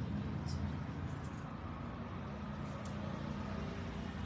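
Steady low background rumble, with no distinct events.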